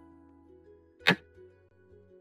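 A single short, sharp move sound effect from an on-screen xiangqi board as a red cannon piece is placed, about a second in, over soft background music.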